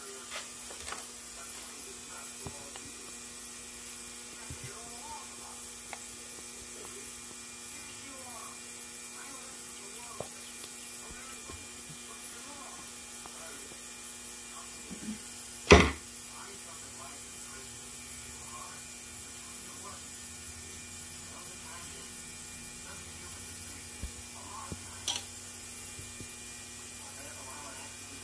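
Ultrasonic parts cleaner running with a steady electric hum. About halfway through there is one sharp metallic clink of a hand tool against the outboard powerhead, and a lighter tap near the end.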